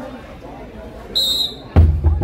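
A referee's whistle blows one short, shrill blast about a second in, and just before the end a heavy festival drum begins beating with deep, fast strokes, signalling the start of the bout.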